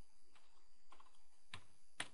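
Computer keyboard being typed on: a few faint, scattered key clicks, the sharpest about one and a half seconds in.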